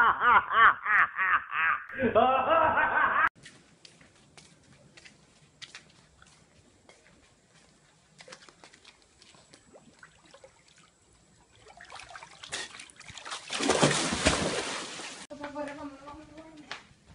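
Laughter in rapid pulses for about three seconds, cut off abruptly. Then faint scattered clicks. Near the end comes a few seconds of loud rushing noise that stops suddenly.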